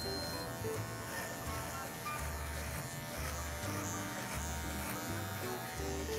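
Electric hair clipper buzzing steadily as it cuts hair at the nape of the neck, under background music with a steady bass line.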